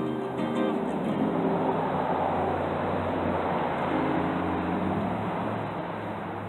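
A strummed string chord rings out briefly, then a passing vehicle's engine and road noise swells and fades over a few seconds.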